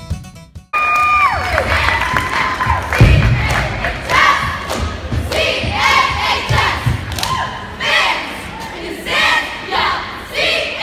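Cheer squad shouting a chant in unison, about one shout a second, over crowd cheering, with heavy thuds from stomps or landings. The routine music drops out just before it starts.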